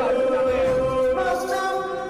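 A man singing into a karaoke microphone, holding one long steady note and then a higher held note about halfway through.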